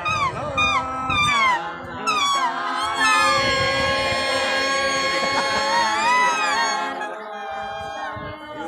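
A group of women singing a folk song together, the voices gliding and wavering through an ornamented melody.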